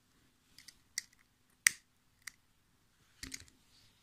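Disposable gas lighter clicking: a handful of short, sharp clicks spread over a few seconds, the sharpest about a second and a half in, as it is struck to singe off a tatting thread end.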